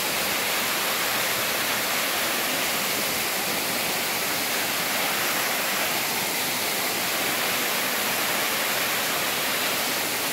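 Waterfall cascading over rock into a pool: a steady, loud rush of falling water.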